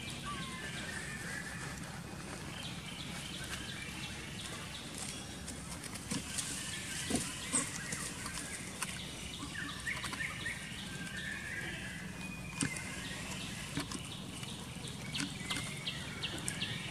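Outdoor ambience: a steady low hum under scattered short high chirping calls, busiest in the middle, with a few small clicks.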